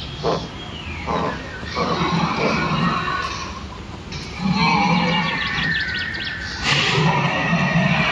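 Recorded dinosaur calls from an animatronic dinosaur's loudspeaker: a series of rough animal cries in short bursts, quieter around the middle and louder in the second half.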